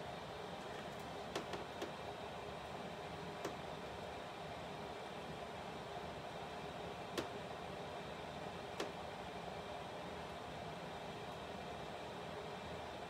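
Steady background hiss with a few faint light taps and clicks, five or so scattered through it, from small objects being handled on a tabletop.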